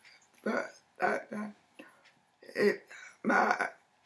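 A woman's voice making about five short, separate vocal sounds, each well under a second, that come out as no clear words.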